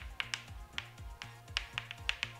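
Chalk clicking and tapping against a blackboard as a word is written, a quick, uneven run of sharp clicks, over quiet background music with a steady low beat.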